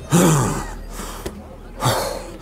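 A man laughing: a breathy burst falling in pitch just after the start, and a shorter one near the end.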